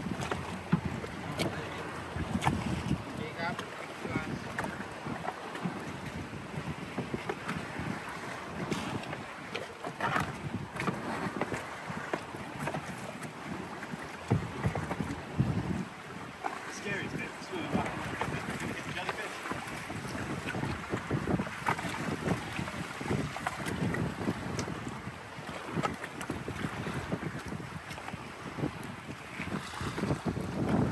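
Wind buffeting the microphone over choppy sea water sloshing and slapping, in uneven gusts and splashes.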